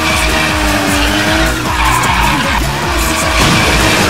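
Edited-in sound effect of a racing car speeding off with its tyres skidding, over background music with a steady low beat.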